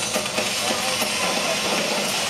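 Live drum kit played loud in an arena, heard from among the audience as a dense hissing wash of cymbals with faint drum hits underneath, mixed with crowd noise and whistles.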